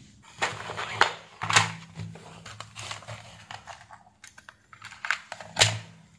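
Handling noise on a workbench: scattered sharp clicks and knocks as test leads and electronic components are put down and a clear plastic parts box is moved, loudest about a second in and near the end.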